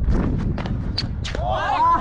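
Running footsteps and wind rumble on a batsman's helmet-mounted camera as he runs between the wickets, with several sharp thuds in the first second or so. About one and a half seconds in, players' shouted calls take over.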